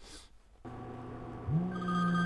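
A moment of near silence at an edit cut, then faint steady room noise returns. About one and a half seconds in, a steady low pitched tone begins.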